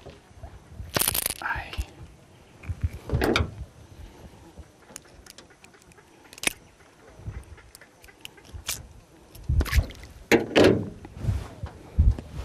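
A small hooked fish splashing and thrashing at the water's surface beside the boat as it is landed by hand: a few separate splashes, with the loudest bursts about a second in and near the end, and a few sharp knocks between them.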